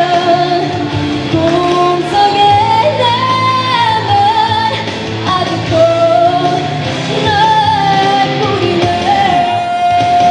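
A woman singing into a microphone over backing music, holding long notes.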